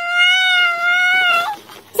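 A single high-pitched, steady, drawn-out vocal note, held for about a second and a half and then breaking off.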